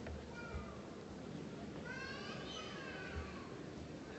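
A high-pitched voice calls out from the audience, briefly near the start and then longer from about two seconds in, falling in pitch, over a low murmur in the hall.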